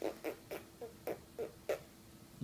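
A quick run of about eight short, squeaky mouth noises, roughly three a second, each with a small click at its onset.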